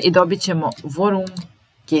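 Computer keyboard typing: quick key clicks under a woman's voice.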